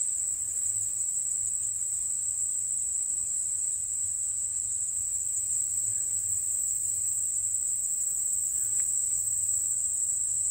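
Insects in a garden chorus: a continuous, steady, high-pitched trill.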